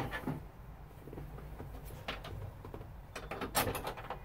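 Light clicks and knocks of an interior mirror bracket being handled and pressed up against the bolts on a Land Rover's metal windscreen header rail. One comes just after the start, a couple about two seconds in, and a quick cluster near the end.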